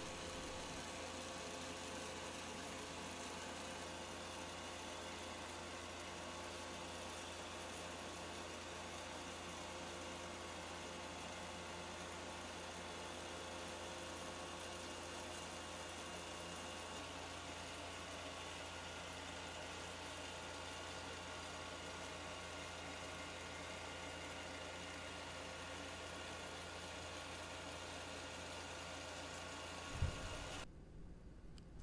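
Powermatic wood lathe's motor running at low speed, a faint steady hum with a light whir.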